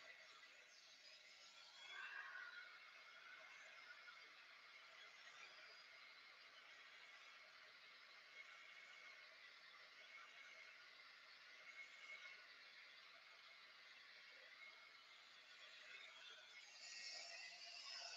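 Near silence, with only a faint steady whir from a handheld heat gun drying paint on a canvas.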